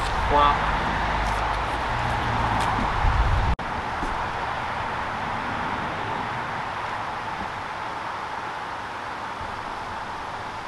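Outdoor background noise: a low wind rumble on the microphone that stops abruptly about three and a half seconds in, followed by a steady, even hiss.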